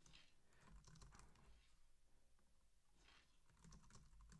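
Faint typing on a computer keyboard: scattered soft key clicks over near silence.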